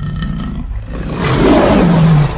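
Lion roar sound effect, deep and sustained, growing louder about a second in.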